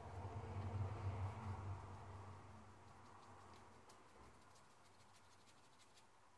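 Faint scratching and light ticks of a fine paintbrush dabbing ink onto fabric and against an ink bottle, with a low rumble that fades out over the first two seconds.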